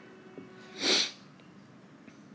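A single short, noisy burst of breath from a person, like a sneeze or a sharp exhale, about three-quarters of a second in.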